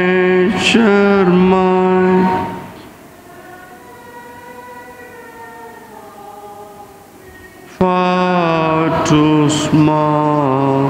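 A man singing a slow hymn close to the microphone, holding long notes. The line ends about two seconds in. After a quieter gap with only faint held tones, the next line starts near the end.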